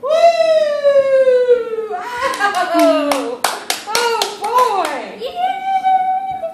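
A long drawn-out cheer falling in pitch, then a quick run of hand claps among excited voices, and another long held cheer near the end.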